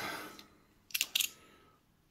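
Two short plastic clicks about a second in, close together, from a clear round coin capsule being handled in the fingers.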